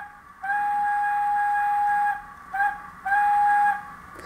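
Steam whistle from the sound decoder of a GWR 0-6-0 model steam locomotive, played through its small onboard speaker while the locomotive stands still. A long steady whistle of about a second and a half, a short toot, then a shorter whistle near the end.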